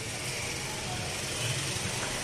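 A pot of milk and vermicelli cooking on the stove: a steady low rushing noise with no distinct knocks or clicks.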